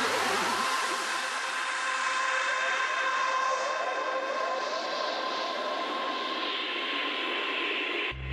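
Breakdown of an electronic dance track: the wobbling bass cuts out under a second in, leaving a long synthesized noise sweep with steady synth tones held beneath it. The high end of the noise slowly fades, building toward the beat's return.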